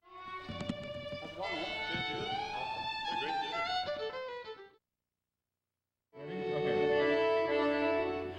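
Music led by a bowed fiddle with sliding notes, cut off after about four and a half seconds; after a second and a half of silence, music with long held notes starts again.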